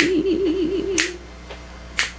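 A woman's unaccompanied voice holding a final wavering note that fades out in the first second, while she snaps her fingers three times, about a second apart, to keep time.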